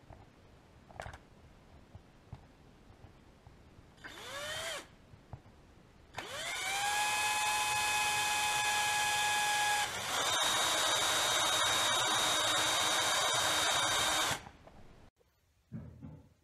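Cordless drill boring a hole through a thin wooden dowel. A brief spin-up about four seconds in, then from about six seconds the motor winds up with a rising whine and runs steadily. It breaks off for a moment near ten seconds, runs again at a slightly higher pitch, and stops about fourteen seconds in.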